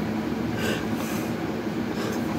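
A steady low mechanical rumble with a constant hum.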